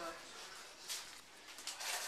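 Faint rustling, with a short burst about a second in and another near the end; a voice trails off at the very start.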